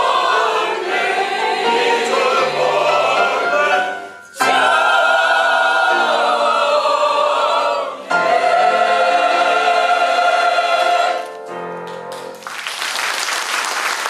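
Mixed choir of women and men singing sustained chords in phrases with brief breaks, closing on a long held chord. Applause starts near the end.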